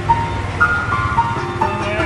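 Old upright piano played by hand: a simple melody of single notes, each held for a moment before the next, with lower notes sounding beneath.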